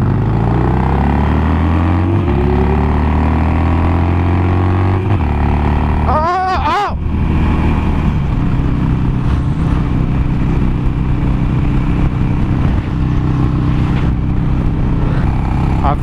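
A 2007 Harley-Davidson Nightster's air-cooled V-twin accelerating hard, revs rising and then dropping at two upshifts in the first few seconds, before settling into a steady cruise. Wind noise runs underneath.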